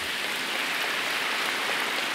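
Large audience applauding, a steady, even patter of many hands clapping.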